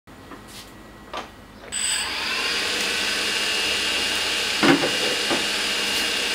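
The four motors and propellers of a DJI Phantom 2 Vision+ quadcopter start up suddenly about two seconds in, then run on as a steady whirring hiss with a thin high whine.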